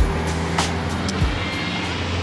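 Steady outdoor road-traffic noise with background music.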